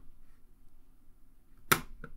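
A single sharp computer click about three-quarters of the way through, over faint room tone.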